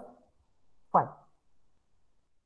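A man's voice saying a single word, "five", about a second in, falling in pitch; otherwise near silence.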